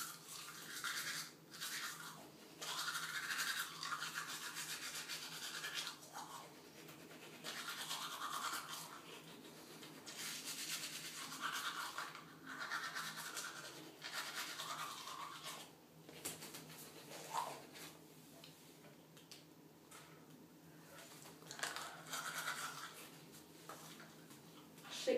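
Manual toothbrush scrubbing teeth: a wet, hissing brushing sound that comes in stretches of a few seconds with short breaks, quieter for a while in the last third.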